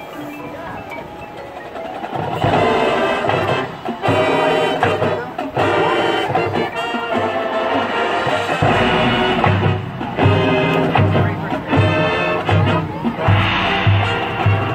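College marching band playing: a soft opening, then the full band of brass and percussion comes in loudly about two seconds in, with a steady low drum beat through the second half.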